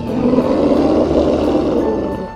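A rough, growling creature roar sound effect lasting about two seconds, played over light background music.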